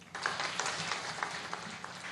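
Audience applause from a large seated crowd, breaking out suddenly just after the start and carrying on as dense, steady clapping.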